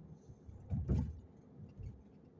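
A brief low thump with a light rattle about a second in, and a smaller thump near the end, over faint steady background noise.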